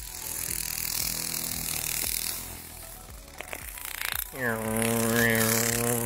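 A man's voice droning a steady, held airplane-engine noise, beginning a little over four seconds in and holding one pitch. Before it, a high hissing buzz runs for about the first two seconds.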